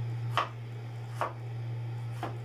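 Kitchen knife chopping vegetables, two sharp knocks a little under a second apart, over a steady low hum.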